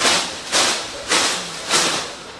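A person breathing hard and fast in sharp, hissing breaths, about two a second, in reaction to the burn of an extremely spicy chip.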